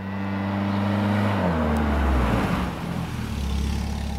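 A car driving up and passing close, its engine note dropping in pitch about one and a half seconds in, with tyre noise swelling and then fading.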